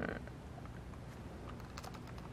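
Faint typing on a computer keyboard: a handful of light, irregular key clicks, most of them in the second half.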